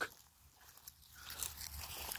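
Faint crunching footsteps through dry grass, starting a little past halfway after a moment of near silence.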